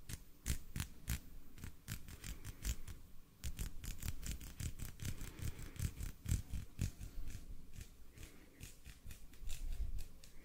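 Hand sounds close to a microphone: fingers and palms rubbing and pressing together, giving a rapid, irregular run of soft clicks and rustles, louder near the end as the hands come right up to the mic.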